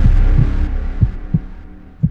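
Trailer sound design: a low rumbling drone with two heartbeat-like double thumps about a second apart, fading away toward the end.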